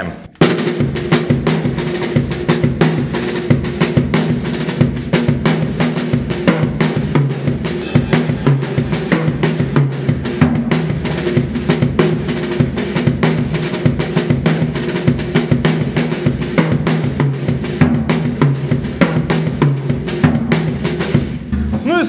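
Acoustic drum kit playing a fast, continuous two-bar groove that starts about half a second in and stops just before the end. The first bar opens with double strokes; in the second, the right hand moves across three toms and back, with accents on beats two and four.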